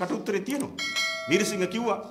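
A bright, bell-like notification chime starts suddenly just under a second in and rings for about a second over a man's speech. It is a subscribe-button bell sound effect.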